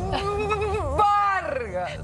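A person's voice drawing out long, wavering vowel sounds rather than words, with a higher held cry about a second in that falls in pitch.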